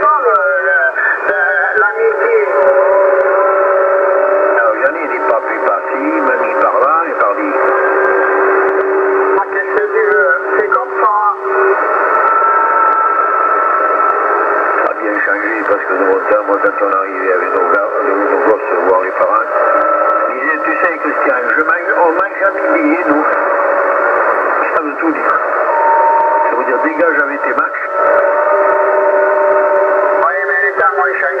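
Citizens band radio reception on a Yaesu FT-450 transceiver in upper sideband at 27.275 MHz: voices of other stations coming through narrow-band radio audio, mixed with noise and several steady whistling tones that come and go.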